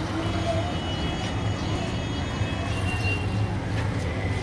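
Steady low rumble of street traffic, with faint indistinct voices.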